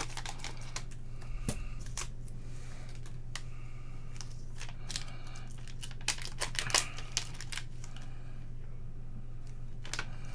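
Black plastic wrapping around a trading card in a one-touch holder being pulled open by hand: scattered crinkles and small clicks, a few louder ones a little past the middle. A steady low hum runs underneath.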